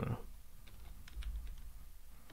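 Computer keyboard typing: a few soft, scattered keystrokes.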